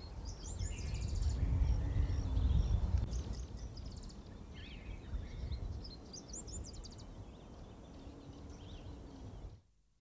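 Wild birds calling outdoors. One call, a short rising note followed by a rapid trill, repeats about every three seconds, with other scattered chirps, over a low rumble that is strongest in the first few seconds. The sound cuts off shortly before the end.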